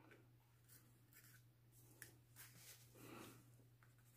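Near silence with a few faint scratches of a Shuttle Art colored pencil stroked lightly across paper, mostly between two and three seconds in, over a steady low hum.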